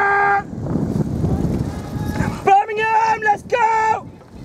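A spectator shouting long, held cheers: one call ends about half a second in, and two more come near the end. In between there is a low rumbling noise.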